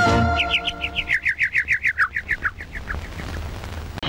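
The closing held note of an 1980s Tamil film song gives way, about a second in, to a rapid string of short bird-like chirps in the music, about six a second, that step down in pitch and fade out.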